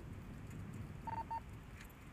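Two short electronic beeps in quick succession a little over a second in, the first slightly longer than the second, over a low background rumble.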